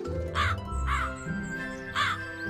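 A crow cawing twice, two short calls about half a second apart, over soft background music.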